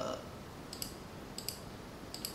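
Computer mouse clicks: two quick pairs, a little under a second in and again around a second and a half, as a value is clicked down in the software. Low room hiss lies underneath.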